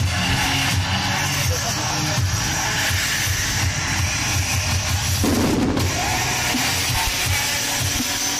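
Music with a pounding drum beat, over the dense crackling and popping of fireworks fountains and comets at a fireworks display.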